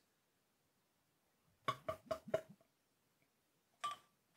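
Beer pouring from a glass bottle into a tilted glass, heard as a quick run of four short glugs a little before halfway and one more near the end, with near silence between them.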